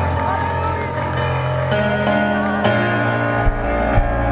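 Live church band playing: held keyboard chords over a bass line, with drum and cymbal hits, the chord changing about halfway through and the bass shifting near the end.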